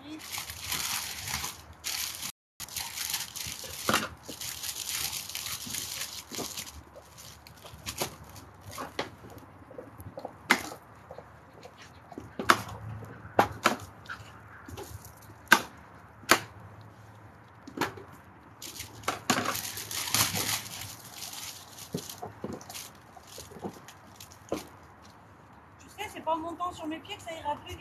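Vegetables being prepared by hand at a table: long stretches of plastic bags rustling and crinkling, with separate sharp knocks a second or two apart as the food is cut and handled.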